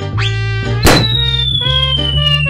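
Comic intro jingle: music with cartoon sound effects, a quick rising whistle-like glide just after the start, a sharp hit a little under a second in, then a long tone that slowly falls in pitch.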